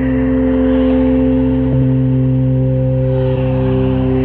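Ambient tape-loop music on cassette: several steady, sustained drone tones held unchanging, with a dull lo-fi sound that has no top end.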